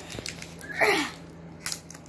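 Fingers working at a small taped plastic toy package that is hard to open, with light handling clicks and a brief falling squeak about a second in.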